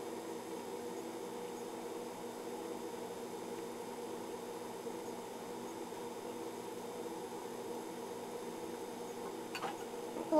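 A steady electrical hum with no change in pitch or level, and a faint tick near the end.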